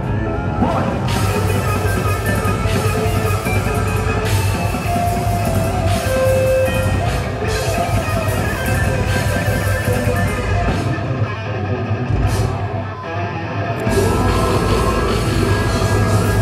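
A technical death metal band playing live through a loud PA: fast distorted electric guitars, bass and drum kit. The low end thins out from about eleven seconds in, and the full band comes back in hard near the fourteen-second mark.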